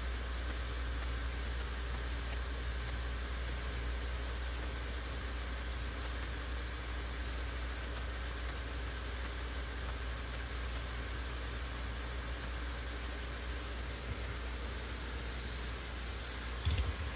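Steady hiss over a low hum, the background noise of the recording during a pause with no speech, with a faint click near the end.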